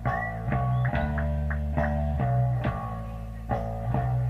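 Live rock band's electric guitars playing, picked notes ringing out roughly every half second over low sustained bass notes.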